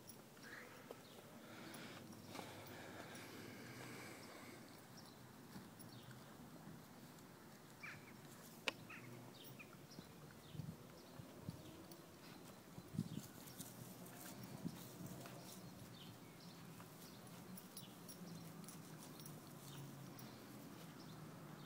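Faint sounds of horses grazing: grass being torn and chewed in short crunches and rustles, with an occasional hoof step on turf.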